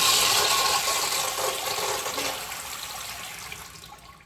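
Flushometer toilet flushing: water rushing through the bowl, fading steadily over the few seconds.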